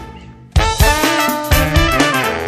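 Ska-punk band with a horn section. The music drops out to a fading tail for about half a second, then the drums and horns come back in hard and play on.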